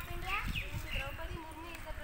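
A child's voice speaking in short phrases, high-pitched, with a low rumble underneath.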